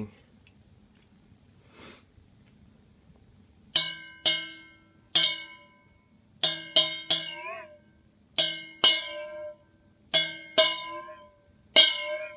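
A stainless steel bowl holding water is struck with the end of a knife about eleven times, often in quick pairs, starting a few seconds in; each strike leaves a bell-like ring that fades. The added water gives the ring a lower pitch, and one ring wobbles in pitch as the water moves.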